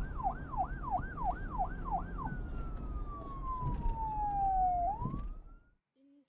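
Emergency-vehicle siren in fast yelp mode, sweeping up and down about three times a second. About two seconds in it switches to one long, slowly falling tone, which turns briefly upward before fading out near the end. A low noisy rumble runs underneath.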